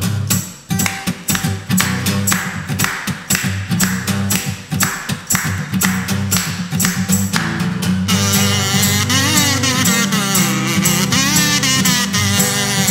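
Acoustic guitar strummed in a steady rhythm as a song begins. About eight seconds in, a small plastic whistle joins with a warbling, bird-like melody over the guitar.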